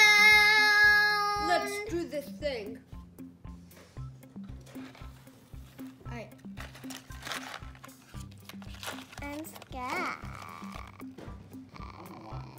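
A girl's loud, long held vocal "ahh" that steps down slightly in pitch and ends about two seconds in. It is followed by background music with a steady beat and a few short children's voice sounds.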